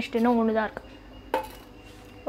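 A single sharp clink of tableware about a second and a half in, ringing on briefly, after a few spoken words.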